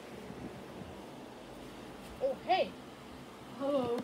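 Two short, high-pitched voice calls, each rising and falling in pitch, about halfway through and near the end, from a person voicing a plush-toy character. Between them there is only a faint steady background.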